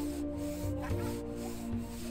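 Hand saw rasping through packed snow in repeated strokes, about two a second, with sustained background music notes under it.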